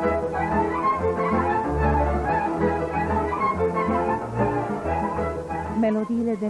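Romanian folk band playing a tune led by violins over a pulsing double bass line.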